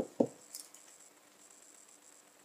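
Near silence: quiet room tone after the last syllable of a word, with a brief soft hiss about half a second in.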